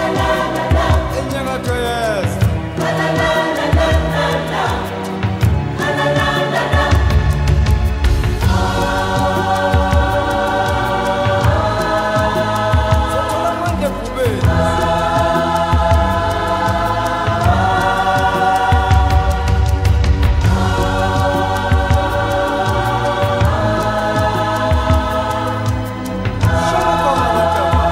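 Background choral music: voices sing held chords that change every few seconds, over a strong bass.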